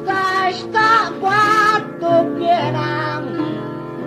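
Maltese għana folk singing: a high voice sings short phrases with a wavering pitch over guitar accompaniment.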